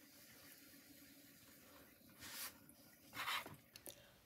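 Very quiet electric pottery wheel running with a faint steady hum, with two short hissing swishes about two and three seconds in.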